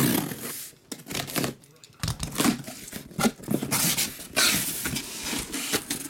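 Packing tape being ripped off a cardboard shipping case and the cardboard flaps pulled open, in irregular bursts of tearing and scraping.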